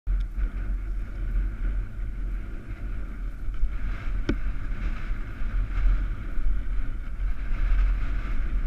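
Wind buffeting a helmet-mounted action camera's microphone, with the rumble of a mountain bike rolling down a grassy slope. A single sharp click about four seconds in.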